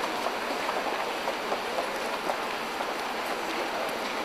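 Steady hissing outdoor ambience of a wet street, like light rain or water on the pavement, with no single sound standing out.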